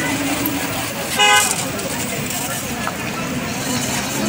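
A vehicle horn honks once, briefly, about a second in, over the steady noise of street traffic and people's voices.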